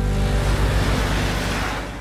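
Whoosh transition sound effect: a broad rushing sweep with a low rumble that fades away near the end, marking a scene change.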